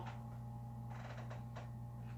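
Quiet room tone with a steady low electrical hum, and a few faint soft noises about a second in.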